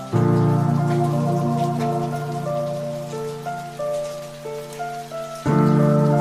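Ambient background music: sustained low chords with a slow line of higher notes. The chord changes just after the start and again near the end, over a faint steady hiss.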